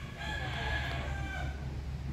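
A rooster crowing once, a long call of about a second and a half.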